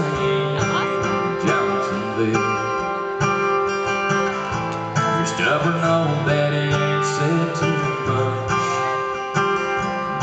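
Live country ballad: acoustic guitar strumming under a male lead vocal sung into a hand-held microphone.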